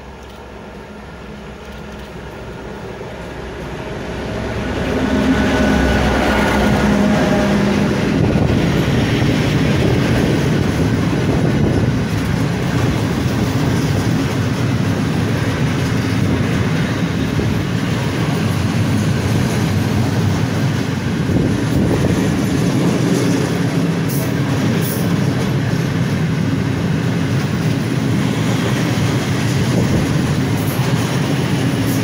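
BR 232 'Ludmiła' diesel locomotive approaching, its engine growing louder until it passes close by about five seconds in. A long freight train of hopper wagons then rolls past with steady wheel-on-rail rumble and clickety-clack over the rail joints.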